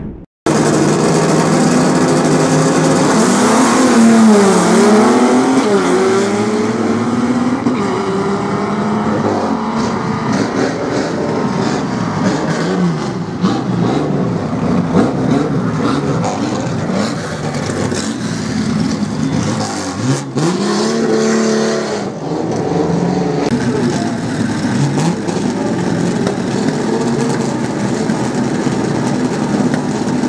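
Drag-racing cars' engines revving hard and accelerating down the strip, the pitch repeatedly dropping and climbing again as they shift, loud throughout.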